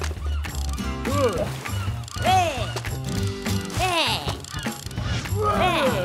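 Fishing reels cranked with a rapid ratchet clicking, a cartoon sound effect of lines being reeled in, heard over cartoon music with loud swooping notes that rise and fall about every second and a half.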